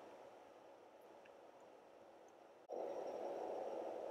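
Near silence, then a faint steady room hum that starts abruptly about two-thirds of the way in.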